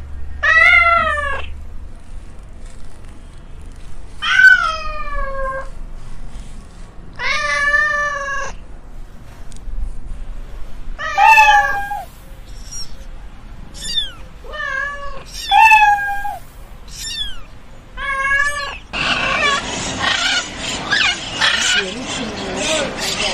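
Cats meowing, about ten separate meows. The first four are long and drawn out; after the middle they come shorter, quicker and higher-pitched. Near the end a dense, noisy jumble of sound takes over.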